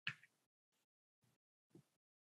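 Near silence, broken by a few short, faint sounds: a sharp click right at the start, then two fainter blips about a second and a half and nearly two seconds in.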